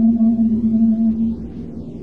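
NASA sonification of Earth's electromagnetic emissions, converted to audible sound: a low, steady, whale-like hum with a fainter higher tone above it, dropping back to a softer rumble about one and a half seconds in.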